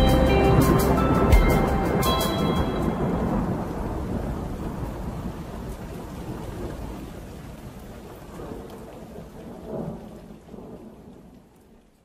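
Thunderstorm sound effect: a clap of thunder at the start and another about a second later over steady heavy rain. The storm then fades slowly away to nothing. The last notes of a children's tune are heard over the first few seconds.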